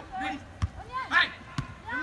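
A football being kicked, two thuds about a second apart, amid players' shouts.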